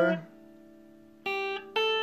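Two single notes picked on a Fender electric guitar, about half a second apart, the second left ringing; notes of the A minor pentatonic/blues scale played in its fifth position.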